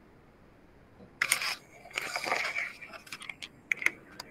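Faint hiss, then about a second in a sudden loud clatter followed by rustling and a run of sharp clicks, like a device or microphone being handled.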